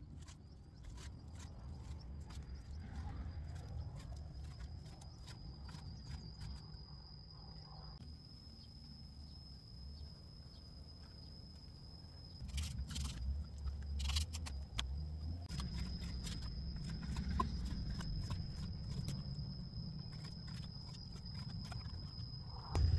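Kitchen knife slicing raw meat on a banana leaf, with many small clicks and taps as the blade meets the board beneath, busiest about halfway through. A steady thin high-pitched tone and a low rumble run underneath.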